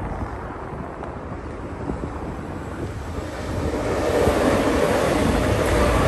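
Electric passenger train approaching and passing close by, its rumble and rushing noise growing louder over the second half, with wind buffeting the microphone.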